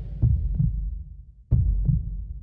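Heartbeat-like double thumps in the intro of a pop stage performance's backing track: deep pairs of beats, the two a third of a second apart, coming twice about 1.3 seconds apart over a low rumble.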